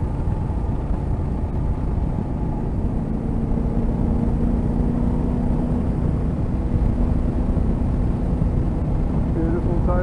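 Yamaha Ténéré 700's parallel-twin engine running at a steady cruise, under a dense rumble of wind and road noise on the microphone. A steady engine note holds from about three seconds in until near the end.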